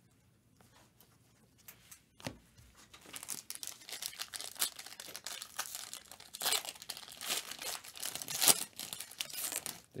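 Foil wrapper of a 2022 Panini Prizm World Cup trading-card pack crinkling and being torn open by gloved hands. It is quiet at first, with one click about two seconds in; from about three seconds in comes dense crackling and ripping foil, with sharper rips near the end.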